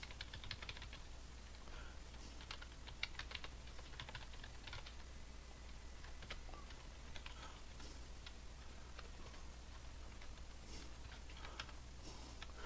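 Faint typing on a computer keyboard: bursts of quick keystrokes with short pauses between them, busiest in the first few seconds and again near the end.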